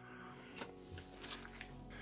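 Faint rustling and a few light taps of gloved hands handling glass and paper on a table, over quiet background music.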